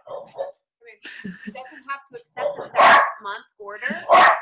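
A dog barking a few times, the loudest bark about three seconds in, over quieter talk.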